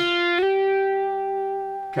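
Electric guitar playing a single picked note on the second string, slid up two frets from the sixth to the eighth fret about half a second in. The higher note is then held and rings on until near the end.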